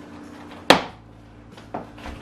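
A Stuart Weitzman high heel knocking on a hardwood floor as the shoe is put on and set down: one sharp, loud knock about two-thirds of a second in and a quieter one near the end.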